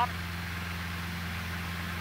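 Steady low hum of a small Cessna training aircraft's piston engine at takeoff power during the takeoff roll, holding an even pitch.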